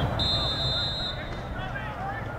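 Referee's whistle blown once, a steady shrill tone lasting about a second, signalling the restart of a set piece, over scattered shouts from players and spectators.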